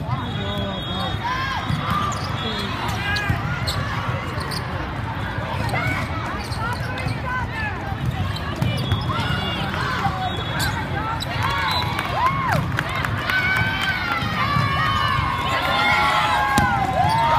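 Sneakers squeaking on indoor sport-court flooring as volleyball players shuffle and cut, many short squeals one after another, thickest near the end, with a few ball hits. Underneath runs a steady hubbub of voices from the many courts in a large reverberant hall.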